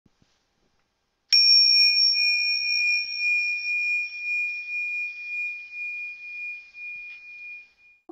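A single high-pitched bell struck once about a second in, ringing on and slowly dying away over about six seconds.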